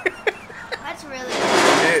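A man laughing: a few short bursts, then a loud, breathy stretch near the end.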